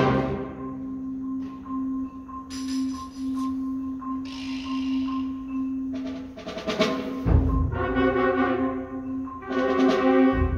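Concert band with percussion playing the opening of a piece. It starts on a loud full-band hit, then holds a low note while a high note repeats about three times a second. Another loud hit with a low drum rumble comes about seven seconds in.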